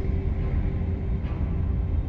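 Steady low road and wind rumble from a moving vehicle, with a faint sustained music tone underneath.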